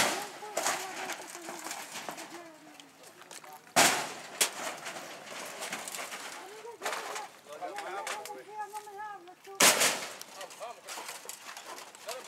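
Three sharp, loud bangs, about four and six seconds apart, as a wood-and-sheet-metal shack is knocked down, with men's voices talking in between.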